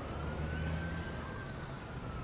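Distant siren wailing in one slow rise and fall, over a steady low rumble of traffic.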